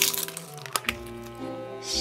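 Crinkling and crackling of a foil blind-bag wrapper as a plastic ornament ball is pulled out, with one sharp click just before a second in. Background music with sustained notes plays throughout.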